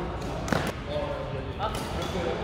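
A badminton racket striking a shuttlecock: one sharp smack about a quarter of the way in, with a smaller sound later, amid players' voices.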